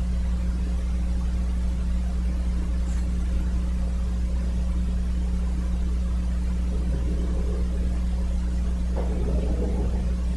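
Steady low hum of room tone with a few faint constant tones above it, unchanging throughout; a faint low murmur rises briefly near the end.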